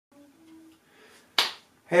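A single sharp finger snap about one and a half seconds in.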